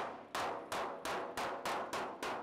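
Body hammer striking the clamped sheet-metal front shroud of an Austin-Healey 3000, about three blows a second, each with a short metallic ring. The hammering is working a kink out of the shroud's accident-damaged panel.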